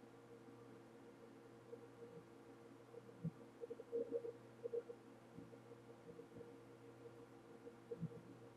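Near silence: a faint, steady hum of room tone, with a few faint, brief sounds in the middle.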